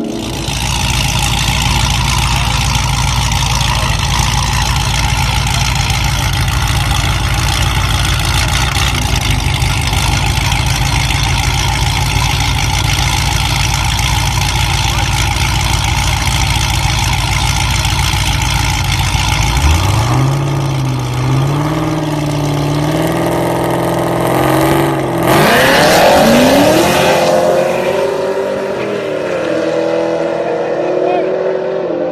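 A car's burnout: a steady, loud roar of engine and spinning tyres for about twenty seconds. Then engines rev and hold at the start line. About 25 s in, two street-race cars launch and accelerate away, their engine notes rising in pitch.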